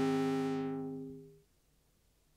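Electronic music: a sustained synthesizer chord fading out, its bright upper tones dying away first, until it ends about one and a half seconds in. Then near silence with a faint hiss.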